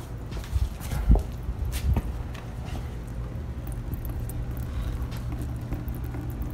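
A few dull knocks in the first two seconds, then a steady low hum.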